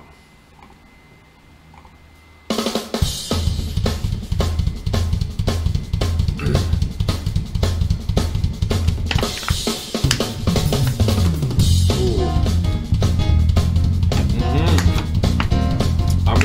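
Quiet for the first two and a half seconds, then a jazz-fusion drum kit played in a fast, busy pattern of drum strokes and cymbals.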